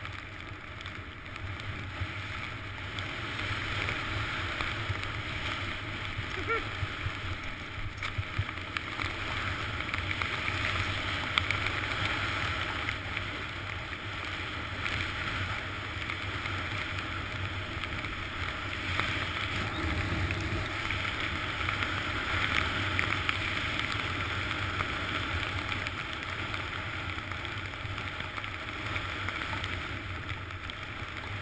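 Wind rushing over a helmet-mounted action camera while riding downhill, with the hiss and scrape of edges sliding on packed snow and a few small bumps along the way.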